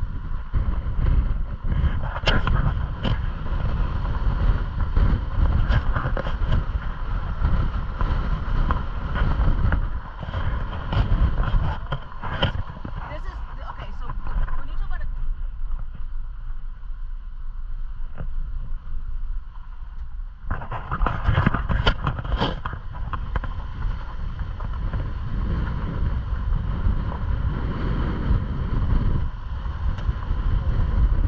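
Jeep driving slowly over a rough dirt road: a steady low rumble of engine and tyres, with wind buffeting the outside-mounted microphone and scattered knocks and rattles over the bumps. The higher part of the noise drops away for a few seconds in the middle, then comes back louder.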